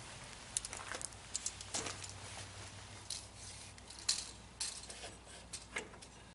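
Scattered light clicks and knocks from a tape measure and a wooden board being handled against a table saw, over a faint steady low hum; the saw is not running.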